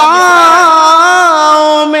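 A man's voice holding one long sung note on the drawn-out word 'baras', amplified through a microphone. It is Urdu poetry (a sher) recited in sung style; the note wavers a little at first, then holds steady.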